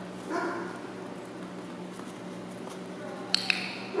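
A short voice sound about a third of a second in, then two sharp clicks in quick succession a little over three seconds in, over a steady low hum.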